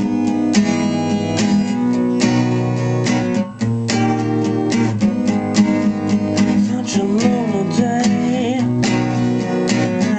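Acoustic guitar with a capo on the fourth fret, strummed in a steady rhythm through a repeated chord progression.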